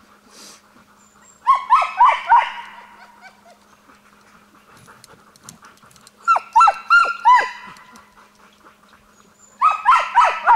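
Husky sled dogs barking in short, high calls that drop in pitch, three or four at a time: a burst about a second and a half in, another around six and a half seconds, and a new burst starting just before the end.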